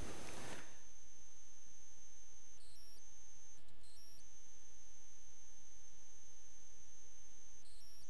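Steady low electrical hum with a faint high-pitched whine that drops out briefly a few times.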